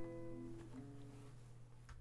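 Acoustic guitar's last chord ringing out and fading away, with a couple of soft notes picked under it in the first second and a faint click near the end.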